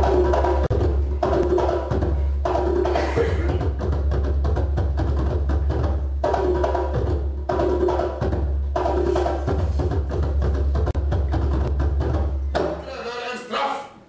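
Loud percussive music: a short phrase of knocking strikes repeats about every second and a quarter over a steady low drone, and it stops shortly before the end.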